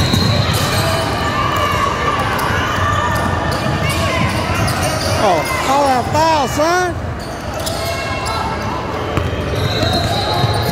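Basketball dribbled on a hardwood gym floor, with sneakers squeaking on the court in a quick run about five to seven seconds in, under background voices in a large echoing hall.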